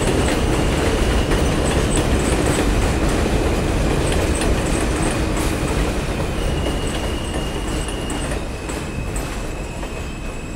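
New York subway train of R160-series cars running past on elevated steel track: a loud rumble with clicks of the wheels over rail joints and a thin steady high tone above it. The sound eases off over the last few seconds as the train draws away.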